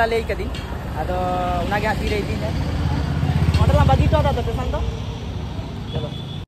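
Street traffic: a motor vehicle's engine rumbles close by, swelling to its loudest about three to four seconds in and then fading, with voices over it.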